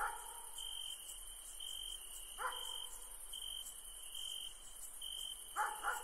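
Faint background ambience: a high chirp repeating about once a second, with short dog barks at the start, about two and a half seconds in and a few more near the end.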